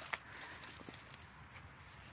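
Faint rustling of dry pine needles and fallen leaves as a mushroom is handled on the forest floor, with a light crackle just after the start and a few soft ticks after it.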